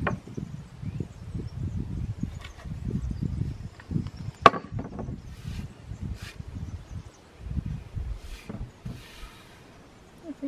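Dark reclaimed wooden boards being shifted and pressed on a wooden workbench: a run of soft irregular thuds and rubs, a couple of short scrapes, and one sharp knock about halfway through.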